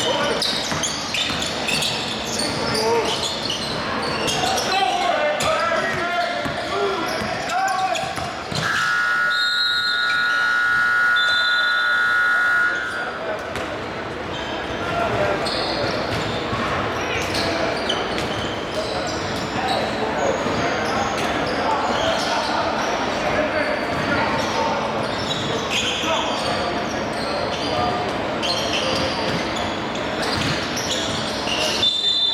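Basketball dribbled on a hardwood gym floor, with players' voices, echoing in a large hall. About nine seconds in, a steady electronic horn sounds for about four seconds, the scoreboard horn marking a stoppage in play.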